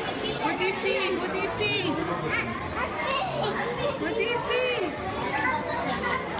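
Children's voices and several people chattering over one another, with no clear words.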